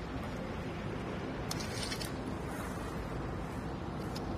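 Steady low room hum, with a faint short rasp about one and a half seconds in as a steel tape measure's blade is pulled out.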